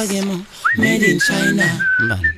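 Whistling: a thin, high whistled melody that slides up into its first note about half a second in, then holds a few wavering notes, over a voice.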